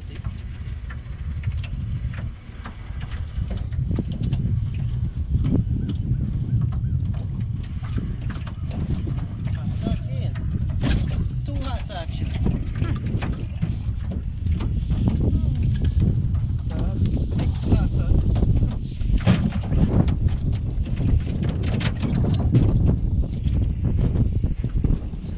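A cast net being hauled up over the side of a flat-bottom boat and into the hull, with many irregular knocks and clatters from its lead weights and the wet mesh against the boat. Steady wind rumble on the microphone runs under it.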